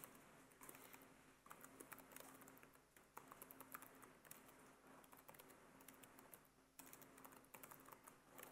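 Faint typing on a computer keyboard: a quick, irregular run of key clicks as a line of R code is entered, over a faint steady hum.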